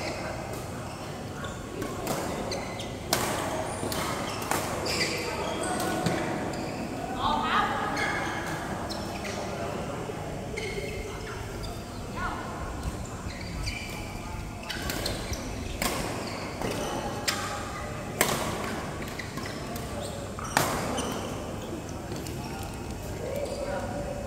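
Badminton rackets hitting a shuttlecock: sharp cracks at irregular intervals during rallies, echoing in a large hall, over a background of players' voices.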